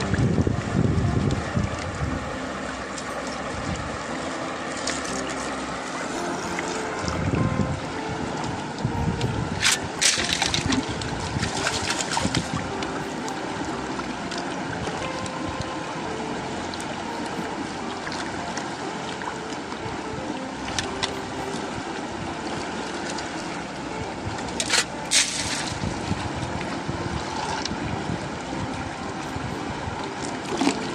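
Water swirling and splashing in a large wooden gold-panning dish as river gravel is worked by hand, with music playing underneath. A couple of sharp clicks, about ten seconds in and again near 25 seconds.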